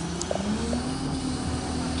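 A motor running steadily, a low drone with a constant hum, rising slightly in pitch in the first second.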